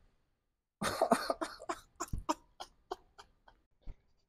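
Silence for most of a second, then a man's cough-like burst of breath right at a clip-on microphone, followed by short breathy puffs that trail off like laughter.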